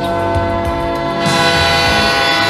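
Diesel locomotive air horn sounding a steady multi-note chord, growing brighter about a second and a half in.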